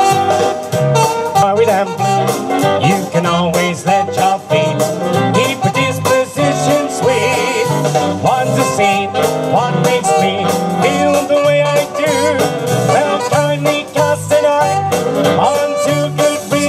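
A man singing into a microphone over a recorded backing track, amplified through PA speakers, with a steady bass beat.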